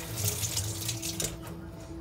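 Kitchen tap running water into the sink, stopping about one and a half seconds in, over soft background music.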